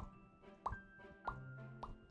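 Lips popping apart as the jaw drops open in the 'fish pops' jaw-release exercise: four soft, quick plops rising in pitch, about two every second. The pop comes from the relaxed lips parting, not from any made sound.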